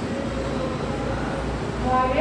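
A steady low mechanical rumble with a faint steady hum over it. Near the end, a pitched tone sets in.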